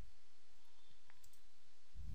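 A few faint clicks from working at a computer, over a steady low background hiss.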